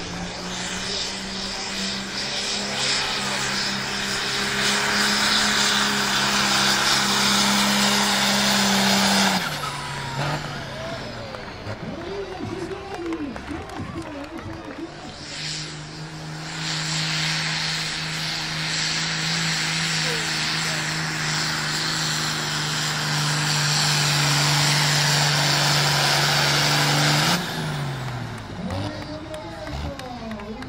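Diesel engines of two modified pulling tractors, each run flat out at steady high revs with a loud hiss over the engine note as they drag the weight sled. The first pull lasts about nine seconds; the second starts about fifteen seconds in and runs for about twelve. Each ends with the engine note falling as the throttle is cut.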